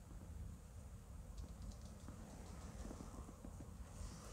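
Very quiet cabin room tone with a few faint, quick clicks about a second and a half in.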